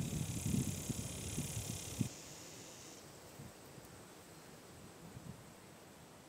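Outdoor ambience: wind buffeting the microphone, with a high, steady buzz above it. Both cut off abruptly about two seconds in, leaving only faint background hiss.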